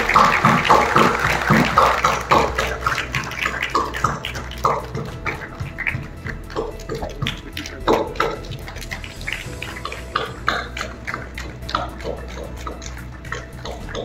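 An audience clapping, dense for the first couple of seconds, then thinning out to scattered claps that carry on through the rest.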